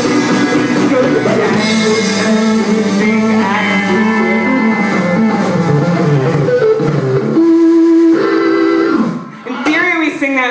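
Live garage rock band playing with Farfisa organ, electric guitar and drums, closing the song on one steady held chord about seven and a half seconds in that stops about nine seconds in.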